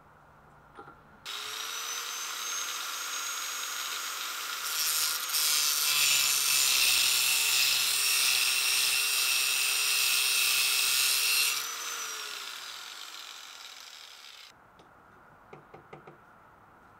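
Electric grinder with a thin abrasive cut-off wheel starting up with a steady whine, then cutting through a metal threaded bolt clamped in a vise with a loud hissing grind for about seven seconds. The tool then switches off and winds down, its whine falling away.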